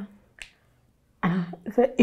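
A woman's speech breaks off, a single short sharp click sounds about half a second in, and after a silent pause of under a second she starts speaking again.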